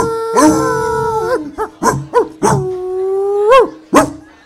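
A man's voice imitating a dog into a microphone: two long held howls, each ending in a sharp upward yelp, with a few short yelps between them, mimicking the kicked dog of the song's lyric.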